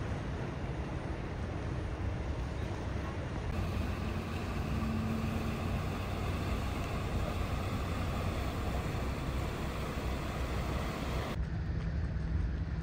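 Steady outdoor background noise with a strong low rumble, like distant engines and traffic. The background changes abruptly about three and a half seconds in and again near the end.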